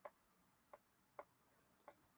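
Near silence broken by four faint, short ticks, irregularly spaced: a stylus tapping on a tablet screen while handwriting.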